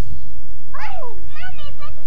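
A small child's high-pitched voice: a falling squeal about a second in, followed by a few quick high syllables. A steady low rumble runs underneath.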